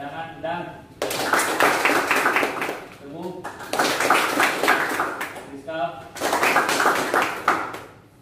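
A marker scratching across a flip chart in quick strokes, in three bursts of a second or more each, as names are written out. Brief murmured words fall between the bursts.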